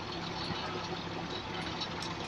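Volvo Eclipse Urban single-deck bus heard from inside the passenger saloon: the engine runs at one steady pitch under a general hiss of cabin noise, with a few faint clicks.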